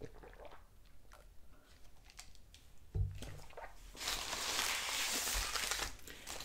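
Soft swallowing and small mouth clicks while drinking from a plastic cup, a low thump about halfway through as the cup is set down on the table, then two seconds of loud crinkling of a paper taco wrapper being handled.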